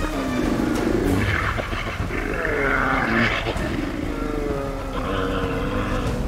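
Brown bears growling and moaning at each other in a standoff, with long calls that slide down in pitch, over the steady rush of river water.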